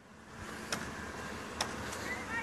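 Faint low hum of a vehicle engine running, with a few light clicks.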